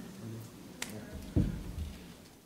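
Knocks picked up by the table microphones as the press conference breaks up: a sharp click a little under a second in, then a heavier low thump about half a second later, with faint low voices in between.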